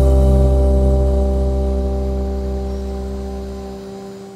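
The song's final chord on acoustic guitar, acoustic bass guitar and ukulele ringing out, with a deep bass note underneath, slowly dying away.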